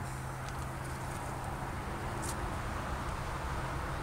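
Steady low background hum with a faint, brief tick a little over two seconds in.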